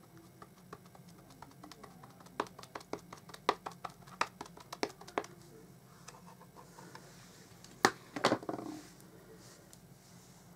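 A rubber stamp tapped again and again onto an ink pad, a run of light taps that grow louder over about five seconds, then a sharp knock a little before eight seconds and a short rattle of knocks as the stamp is pressed down onto card.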